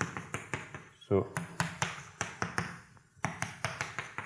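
Chalk tapping and scraping against a blackboard as short lines are drawn: a quick, irregular run of sharp taps.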